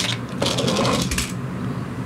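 Transformers Energon Igniters Bumblebee toy car's plastic gear mechanism giving a quick whirring rattle for under a second as the car is released and runs across a cardboard box lid, with a click as it starts.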